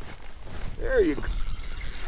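A man's brief wordless voice sound, falling in pitch, about a second in, over a low rumble on the microphone.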